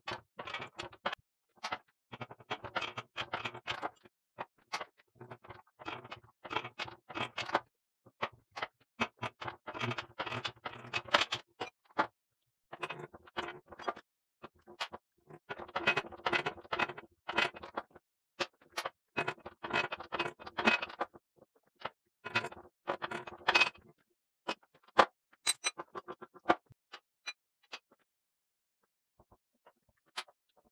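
Hand-lever arbor press forcing a square push broach through a hole in 4140 pre-hardened steel: bursts of rapid clicking and creaking, a second or two each, with short pauses between as the stroke stops and starts.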